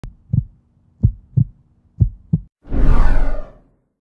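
Heartbeat sound effect: three low double thumps, about a second apart, followed by a whoosh that fades out just before the logo appears.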